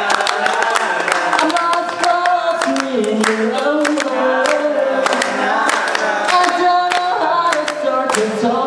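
A group of voices singing together without instruments, holding long notes that step up and down, with hand claps keeping time.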